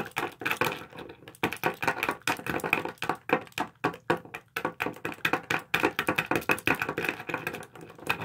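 Quick, irregular clicking and tapping of hard plastic Littlest Pet Shop figures knocking on a tabletop and against each other as they are bounced along in a dance, several taps a second.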